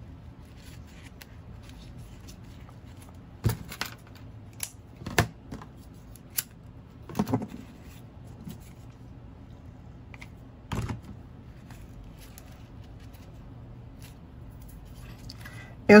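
Grosgrain ribbon and a hair bow being handled and wrapped by hand: soft rustling broken by a handful of short, sharp clicks and snaps scattered through the middle.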